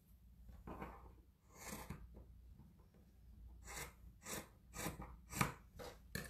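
Scissors snipping through a knit sock: a few scattered faint cuts, then about five quick snips in a row in the second half.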